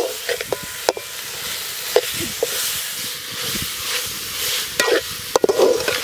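Masala-coated quail pieces sizzling in a pan as they are stirred with a metal slotted ladle, which clinks against the pan several times.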